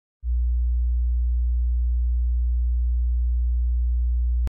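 A steady, deep electronic hum: a single low pure tone that starts a moment in and holds one pitch and level throughout.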